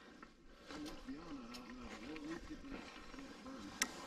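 A person humming faintly, a low tone that wavers up and down for a couple of seconds, with one sharp click near the end.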